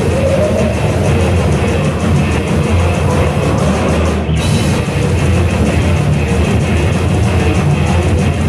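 Death/thrash metal band playing live: distorted electric guitars, bass and a drum kit, loud and dense, heard from within the audience of a club.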